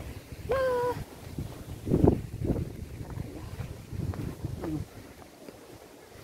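A woman's brief hum of the voice, then irregular low rumbling thumps of wind buffeting and handling noise on a phone's microphone.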